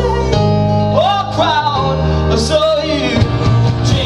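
Live rock band playing: a man singing lead over keyboard, electric guitar, electric bass and drums, with the bass notes changing every second or so.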